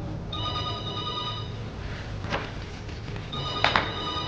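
A telephone ringing: two rings about three seconds apart, each a little over a second long, with a couple of short knocks between and during them.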